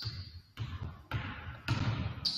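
Basketball dribbled on a hardwood gym floor: three bounces about half a second apart, each ringing on in the large, empty gym.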